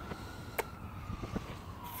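Faint background noise with a thin, steady high hum and a sharp click just over half a second in, followed by a couple of lighter ticks.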